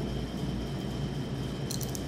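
Steady low room hum, then a few quick light clicks near the end as bangles on the wrists knock together when the arms are raised.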